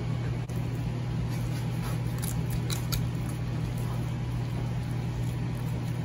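A steady low mechanical hum from a background machine, with a few faint knife scrapes about two to three seconds in as a boning knife cuts chicken meat away from the bone on a plastic cutting board.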